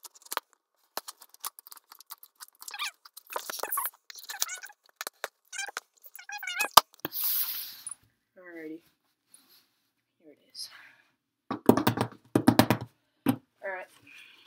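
Scissors cutting packing tape and cardboard on a shipping box: a run of sharp snips and clicks, with a longer rasping tear about seven seconds in. Muttered voice sounds come in between.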